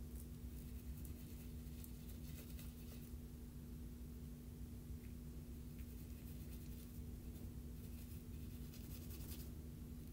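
Faint scratching of a small paintbrush stroking pigment powder over embossed cardstock, coming in short bouts of strokes over a steady low hum.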